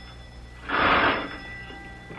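Electric doorbell ringing in a short burst of about half a second, beginning about two-thirds of a second in, with a faint bright ring lingering after it.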